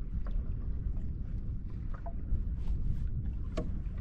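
Steady low rumble of wind and lake water around a small boat, with water moving against the hull. A few light knocks and clicks sound through it, the sharpest near the end.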